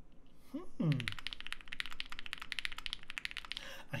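Fast typing on an Extreme75 mechanical keyboard with KTT Strawberry linear switches and GMK Black Lotus keycaps: a dense, quick stream of keystrokes that starts about a second in and stops just before the end. The board sounds like a PE foam board.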